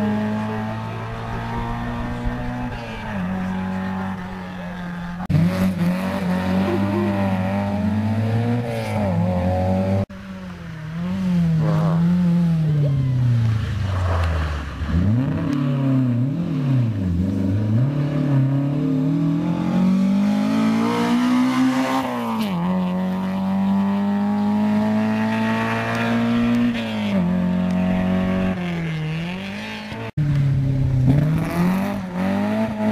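Toyota Corolla AE86 rally car's four-cylinder engine revving hard, its pitch repeatedly climbing and falling with gear changes and lifts as it drives through the stage. The sound breaks off abruptly about ten seconds in and picks up again on another pass.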